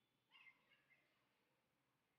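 Near silence: faint room tone, with one brief, faint high-pitched sound about half a second in.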